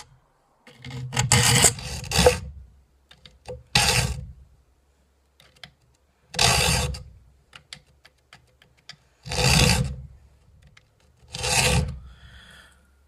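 Steel saw file rasping across the teeth of a 10-point-per-inch Disston hand saw, one tooth gullet at a time during sharpening: a quick run of about three strokes about a second in, then single strokes every two to three seconds.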